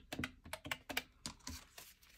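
Paper dollar bills being handled as a stack is picked up: a quick, irregular series of light clicks and crinkles from the notes.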